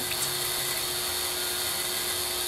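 Steady machine noise: an even hiss with a constant hum tone running under it.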